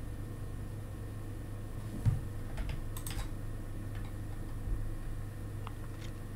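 A few scattered, faint clicks from computer controls (keyboard or mouse) over a steady low hum.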